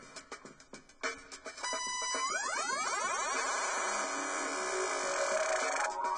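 Electronic DJ sample clips playing from Mixxx decks: a quick run of sharp percussive beats, then, about a second and a half in, a loud synthesizer sweep whose many tones glide apart in pitch and swell into a sustained wash.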